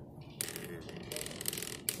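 Rustling and scuffing of clothing and bodies shifting against a grappling mat, irregular and uneven, starting about half a second in, with faint voices in the background.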